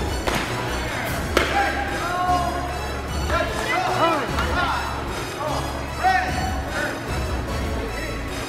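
Music playing over the sharp clacks of escrima sticks striking in sparring, the loudest hits about a second and a half in and about six seconds in.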